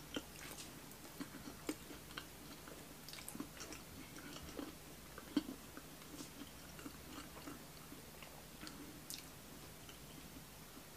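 Faint chewing of a mouthful of croissant-crust pepperoni pizza: soft, irregular wet mouth clicks scattered throughout, one sharper click about halfway through.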